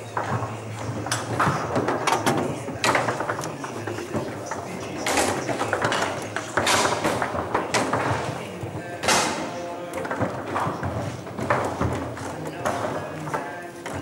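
Foosball in play: irregular sharp knocks as the ball is struck by the figures and hits the table walls, over background voices.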